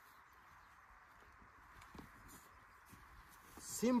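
Faint, intermittent scraping and light taps of moist, loose soil being smoothed on a seedbed, over a steady background hiss.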